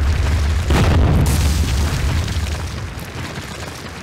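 A crumbling-wall sound effect: a deep boom with a sharp crack about three-quarters of a second in, then a low rumble that slowly fades away.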